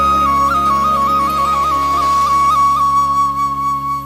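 Bamboo transverse flute (sáo trúc) holding one long high note, decorated with quick upward flicks in the first half, over sustained low backing chords. This is the closing phrase of a Vietnamese folk-style song.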